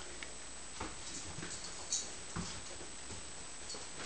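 A puppy playing with a sock on carpet: soft scuffling and the patter of paws, with a few light thumps, the sharpest about two seconds in.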